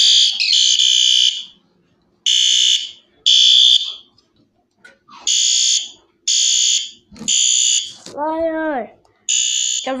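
Fire alarm horn strobe's electronic horn sounding in loud pulses of under a second each, in groups of three with a pause between, the temporal-3 evacuation pattern. About eight seconds in a short voice-like call rises and falls between the horn groups.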